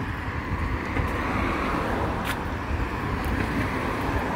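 Steady street traffic noise from passing cars, an even rush with a low rumble under it. A single short click a little past halfway through.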